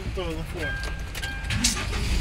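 People talking inside a van over a low, steady engine rumble, with a high electronic beep tone held twice in the middle.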